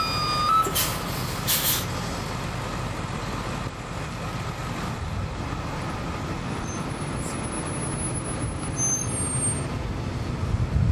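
Inside a NABI 40-SFW transit bus: a beeping tone cuts off just after the start, then two short hisses of compressed air from the bus's air system. After that comes the steady low rumble of its Cummins ISL9 diesel and road noise, growing a little toward the end.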